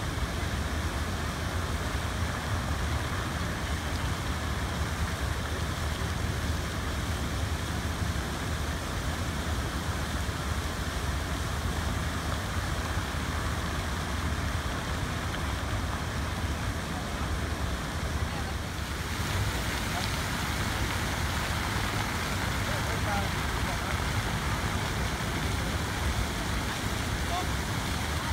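Fountain water jets spraying in a steady hiss over a low rumble, with people talking. The hiss gets brighter about three-quarters of the way through.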